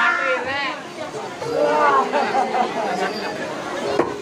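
Voices talking and calling out over crowd chatter.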